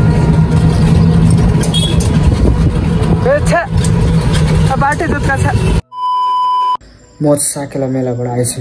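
Auto-rickshaw ride from inside the cabin: steady engine and road rumble with low hum, with women's voices over it. It cuts off suddenly a little before the end and a short, steady beep follows, then a man speaking.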